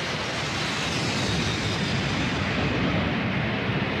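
Four-engine jet airliner in flight: a steady rush of engine noise with a faint thin high whine above it.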